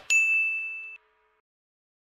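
A single bright electronic ding, a chime sound effect on an animated subscribe end card. It strikes once and rings on one high tone for about a second, then cuts off suddenly.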